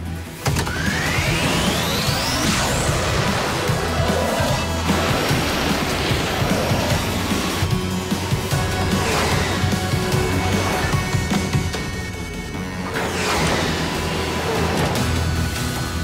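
Cartoon rocket-boost sound effect: a rising whistle near the start, then a steady rushing thrust as the shrunken vehicle blasts along the pipe, under background music.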